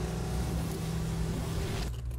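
Vintage sports car engine running hard at speed, with a dense rush of engine and wind noise. The noise drops away abruptly near the end.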